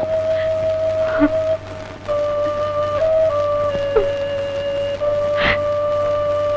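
Film background score: a single instrument holding long, steady notes that step slightly in pitch every second or so.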